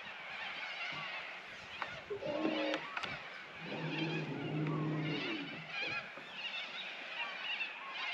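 Birds calling: a steady chatter of high chirps and warbles, with two low pitched honking calls, a short one about two seconds in and a longer one held for over a second around the middle.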